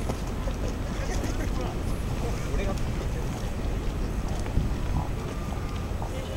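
Wind rumbling steadily on the microphone outdoors, with faint, indistinct voices of people talking in the background.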